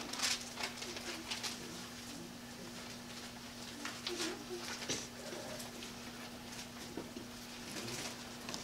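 Bible pages being turned: faint, scattered rustles and soft clicks over a steady low electrical hum.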